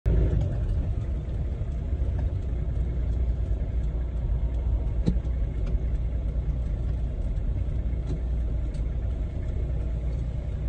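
Steady low rumble of a car's engine and road noise heard from inside the cabin while driving slowly, with a single sharp click about halfway through.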